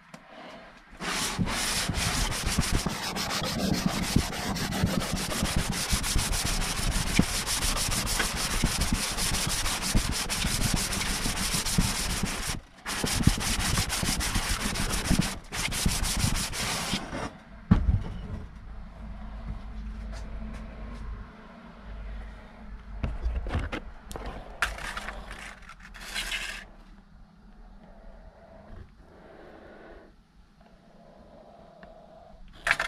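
An aluminium cylinder head's deck face being rubbed by hand across sandpaper discs glued to a flat metal bench, resurfacing the head gasket face. A loud, continuous gritty sanding starts about a second in and stops about 17 s in, broken by two short pauses. Lighter scrapes and knocks follow as the head is shifted, then it goes quiet near the end.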